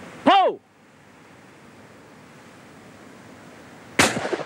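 A single shouted "Pull!" call for a clay target. Then steady wind noise for about three seconds, broken right at the end by the sharp report of a shotgun shot.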